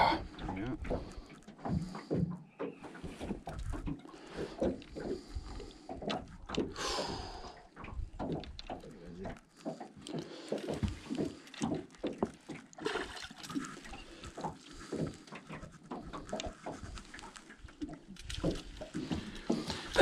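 Faint, indistinct voices with scattered small knocks and handling noises, and no clear words.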